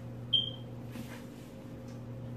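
A single short, high-pitched ping about a third of a second in, fading quickly, over a steady low hum.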